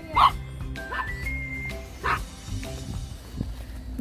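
A Maltese barking three short, sharp times, the first loudest, over cheerful background music.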